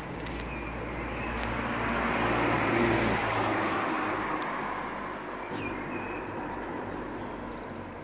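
A motor vehicle passing along the street, its tyre and engine noise swelling to a peak about three seconds in and then fading away.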